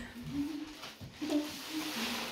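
Soft wordless humming or cooing from a person, in two short low phrases about a second apart.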